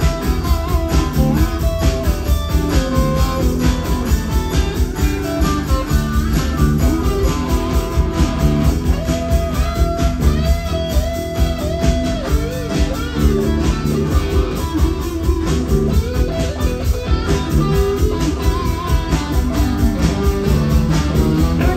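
Live roots-rock band playing an up-tempo foot-stomper with a steady driving beat: electric lead guitar lines over strummed acoustic guitar, bass, drums and washboard, with no vocal line.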